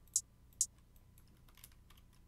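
Computer input clicks while notes are placed in a piano roll: two sharp clicks about half a second apart, then a few faint ones.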